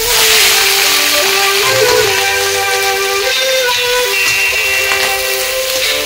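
Background music over the steady sizzle of sliced onions frying in hot oil in a wok. The sizzle sets in at once as the onions hit the oil.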